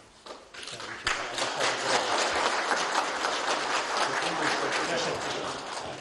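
A small group of people applauding, with a few scattered claps at first, then steady clapping from about a second in that dies away near the end.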